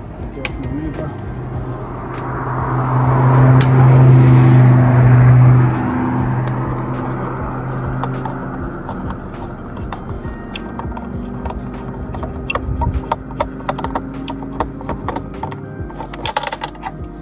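A loud low hum with a rushing noise swells over a few seconds and cuts off suddenly. Then come light repeated clicks and ticks of a Torx screwdriver and the plastic roof-rail fittings being worked by hand.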